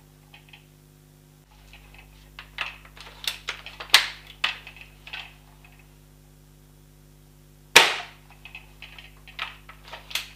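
Wells MB08 spring-powered bolt-action gel blaster being worked and fired: a run of clicks and clacks as the bolt is cycled, then one sharp shot about eight seconds in, followed by a few more clicks.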